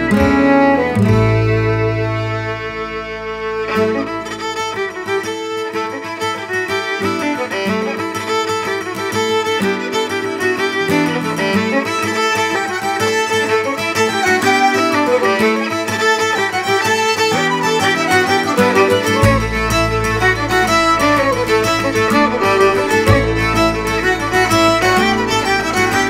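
Instrumental folk fiddle tune: a fiddle playing a quick, busy melody over guitar accompaniment, with low bass notes in places.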